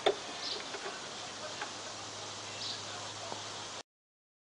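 Car battery cable terminal being disconnected by hand: one sharp click at the start, then a few faint ticks and clicks as the clamp and cable are handled.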